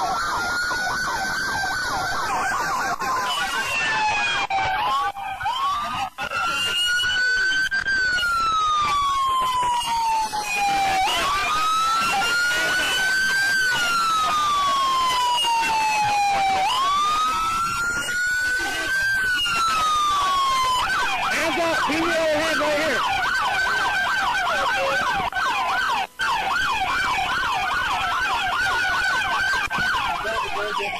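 Police car siren sounding in wail mode, slow rising-and-falling cycles about every five and a half seconds, then switching to the fast yelp about two-thirds of the way through.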